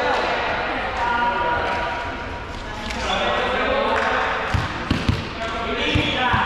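A volleyball bounced on the gym floor three times in quick succession, about four and a half seconds in, as a player readies to serve, over indistinct players' voices.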